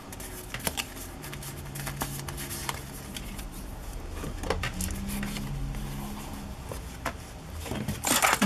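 Light rustling and soft taps of paper and card being handled on a cutting mat, over a steady low hum.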